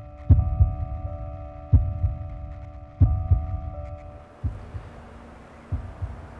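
Soundtrack heartbeat effect: slow low thumps, some doubled like a lub-dub, about one beat every second and a half, under a held drone of steady tones. The drone fades out about four seconds in, and the last beats are fainter.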